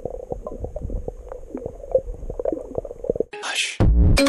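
Muffled underwater sound from a camera held under the sea: a low rumble with many scattered clicks and crackles. About three seconds in it cuts to a short rushing whoosh, and near the end intro music starts with a loud hit.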